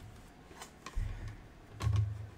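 A few faint small clicks, then a low muffled thump and a brief knock close to the microphone.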